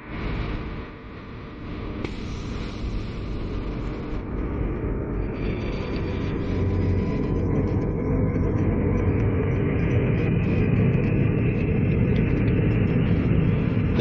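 Jet engines of an SR-71 Blackbird running on the ground: a steady, dense rumble that grows gradually louder.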